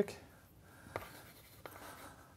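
Chalk writing on a blackboard: two short, faint chalk strokes a little under a second apart.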